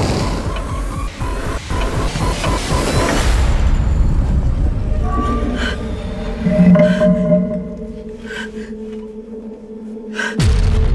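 Horror film soundtrack: a loud rumbling swell for the first three seconds or so, then sustained low drone tones that fade toward the end, with a woman's gasping breaths.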